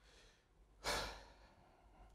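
A person's single audible sigh, a breath let out about a second in and fading within half a second, over faint room tone.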